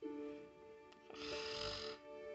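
Cartoon soundtrack played through a TV speaker: background music with held notes, and from about a second in a short, breathy rasping noise from the blue alien creature that lasts under a second.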